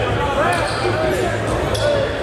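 A basketball bouncing a couple of times on a hardwood gym floor, over indistinct voices echoing in the gymnasium and a steady low hum.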